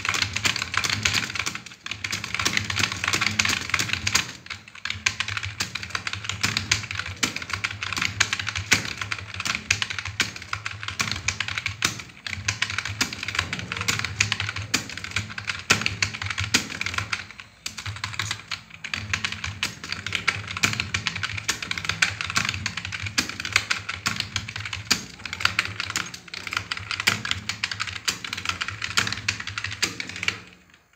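Fast touch-typing on a ProDot computer keyboard: a rapid, continuous patter of key clicks from a home-row drill, broken by brief pauses about two, four, twelve and seventeen seconds in.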